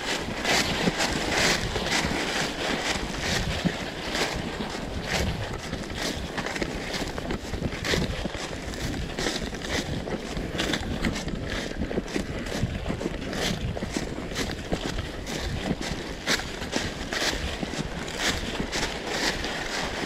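Footsteps crunching and rustling through dry fallen oak leaves and pine straw, a steady run of irregular crackles.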